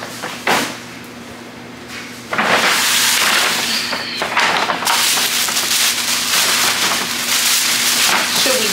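Tissue paper crinkling and rustling as it is stuffed into a paper gift bag: one sharp rustle about half a second in, then loud, continuous crinkling from about two seconds in.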